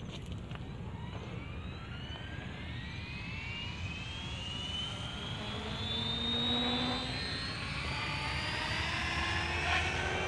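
JR Propo Forza 450 electric RC helicopter spooling up: its motor and rotor whine climbs steadily in pitch and grows louder over the first several seconds, then levels off as it lifts off.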